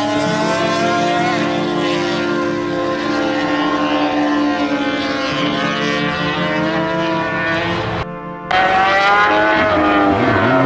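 Honda RC213V MotoGP bike V4 engine running at high revs on track, its pitch rising and falling with overlapping engine notes. There is a brief drop in level about eight seconds in.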